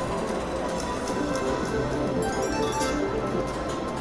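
Siberian Storm video slot machine playing its spin music as the reels spin, with a few short clicks partway through as the reels land.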